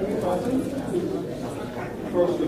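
Indistinct, low murmured voices in a meeting room.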